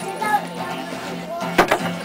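Acoustic guitar chord ringing on at the end of a sung verse, with one sharp strum about one and a half seconds in.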